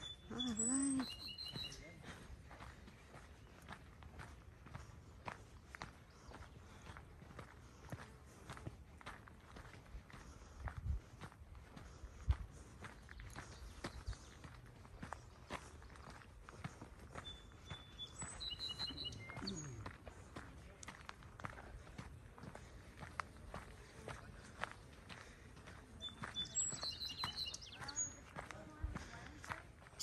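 Footsteps crunching along a sandy dirt trail, a steady run of steps. Short high chirps come three times: about a second in, about two-thirds of the way through, and near the end.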